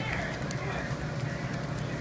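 Faint rustling of foil-wrapped baseball card packs being picked up and handled on a wooden table, over a steady background hiss.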